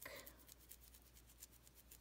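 Near silence with faint, quick scratching strokes: a remover-soaked cotton pad rubbing over a polished acrylic fingernail.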